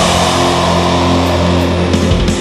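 Black/thrash metal: a distorted chord and bass note held ringing steadily, with the drumming stopped until the very end, when the beat comes back in.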